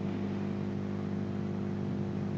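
Steady low hum made of several held tones, unchanging throughout.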